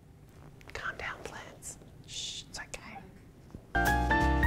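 A woman's faint whispered voice. Shortly before the end, piano music cuts in suddenly and much louder.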